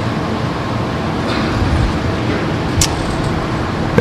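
Steady background noise of a lecture hall recording, an even hiss over a low hum, with a short faint tick about three seconds in.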